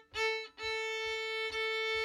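Violin bowing the note A: one short stroke, then one long held note of about a second and a half.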